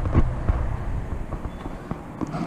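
Wind rumbling on the camera's microphone, with a few soft footsteps on pavement as the wearer walks across the lot.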